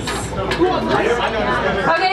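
Overlapping voices of several people talking at once: chatter in the room.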